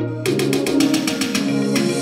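Music with rapid percussion played through a pair of floor-standing loudspeakers in a small room. About a quarter second in, the track turns busier, with quick, dense beats.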